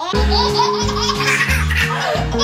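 A baby laughing in repeated bursts over background music.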